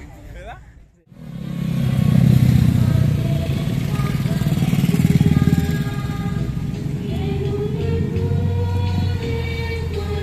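A vehicle engine running loudly close by, starting about a second in, with a low pulsing throb. From about four seconds in, music with long held notes joins it over a loudspeaker.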